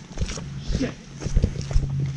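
Footsteps of several hikers on a dirt trail: irregular soft thuds and scuffs.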